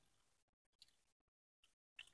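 Near silence, with a faint brief click a little under a second in and another near the end.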